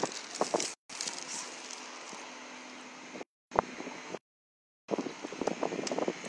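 Outdoor waterfront ambience and wind noise on a phone microphone, with scattered handling clicks. The sound cuts out abruptly to dead silence three times, dropouts in the recording, the longest for over half a second about four seconds in.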